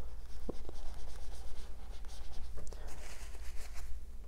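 Dry-erase marker writing on a whiteboard: a run of short, faint scratchy strokes, busiest in the second half.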